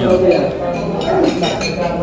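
Cutlery and dishes clinking against plates and glasses during a meal, with several short ringing clinks, over people talking at the table.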